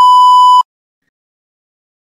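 A single loud, steady electronic beep lasting just over half a second and cutting off sharply: the cue tone that marks the start of the answer period in an interpreting practice exercise.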